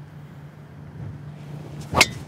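Golf driver striking a teed ball: one sharp, loud crack at impact near the end, after a near-silent backswing and downswing. A faint steady low hum runs underneath.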